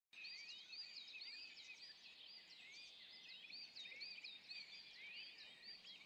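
Faint, steady chorus of high chirping calls from small wild animals, many short hooked notes overlapping continuously at two pitches.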